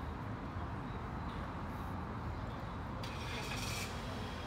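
Steady rumble of road traffic, with a brief hiss lasting under a second about three seconds in.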